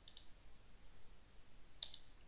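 Computer mouse clicking twice: a faint click just after the start and a sharper one near the end.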